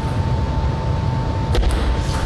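A table tennis serve: one sharp click of the racket striking the celluloid ball, followed by quick light ball taps, about one and a half seconds in. It sits over a steady low background rumble and a constant hum.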